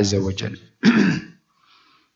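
A man clears his throat with one short, loud cough about a second in, just after a spoken word.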